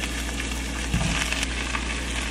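Diced poblano peppers sizzling in oil in a frying pan, with a soft thump about a second in as red onion wedges are dropped in.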